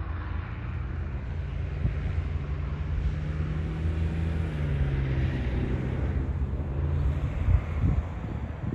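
Helicopter hover-taxiing across an airfield: a steady low rotor and engine hum that steps down in pitch about halfway through, with a couple of thumps near the end.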